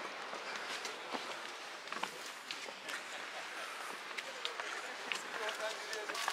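Hikers' footsteps on a rocky, stony trail, with scattered short clicks of feet and trekking poles on rock.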